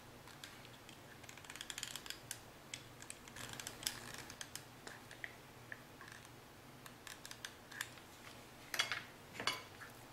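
Small plastic clicks and taps from a hot glue gun and a plastic cup lid being handled while glue is applied. The clicks are faint and scattered, busiest in the first half, with a few sharper ones near the end.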